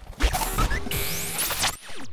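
Short logo-animation sound effect: a musical sting with a low hit at the start and rising whooshing sweeps around a second and a half in, dying away at the end.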